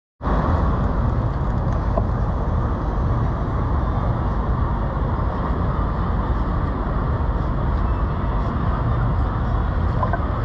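Sport motorcycle's engine idling steadily next to the camera, a low, even rumble.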